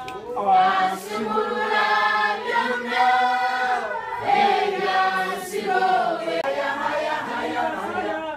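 A church congregation singing a worship song together, unaccompanied, in long held notes.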